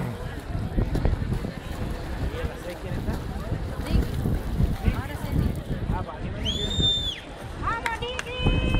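Wind gusting on the microphone with voices in the background, and one held high whistle about six and a half seconds in.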